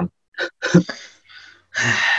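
A man laughing quietly in a few short, breathy huffs, ending in a longer breathy exhale near the end.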